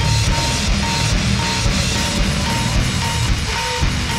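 Heavily distorted sludge/goregrind music: a dense wall of distorted guitar, bass and drums. A short, high electronic-sounding beep repeats about twice a second over it.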